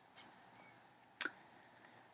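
Two faint, short clicks about a second apart, in a quiet room.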